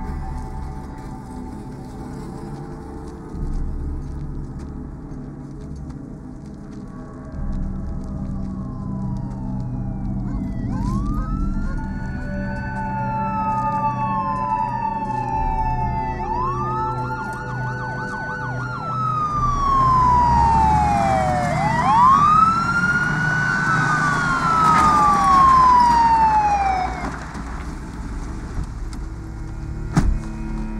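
Police sirens wailing: several overlapping rising-and-falling wails, each about five seconds long, come in about a third of the way through, grow louder and stop near the end. A low droning music bed runs underneath.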